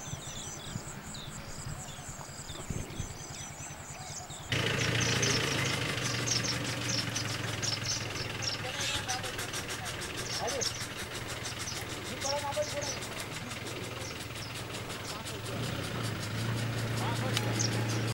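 A vehicle engine idling with a steady low hum, among outdoor sound with many short high chirps. The sound jumps suddenly louder about four and a half seconds in.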